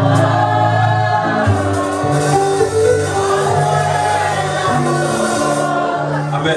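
A church congregation sings a slow gospel song in long held notes over band accompaniment, with sustained bass notes underneath.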